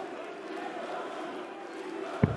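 Arena crowd noise: many voices at once, held steady with no single sound standing out.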